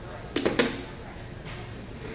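Small plastic child's chair set down on a hard tile floor: two sharp knocks a fraction of a second apart, about half a second in.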